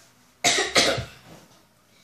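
A person coughing twice, two short loud coughs about a third of a second apart.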